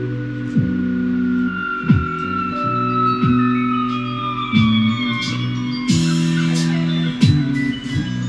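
Electric bass and electric guitar jamming. The bass holds low notes that change about every second and a third, with a quick sliding drop into each change, while a high note slowly falls in pitch over the first few seconds and gliding higher lines take over in the second half.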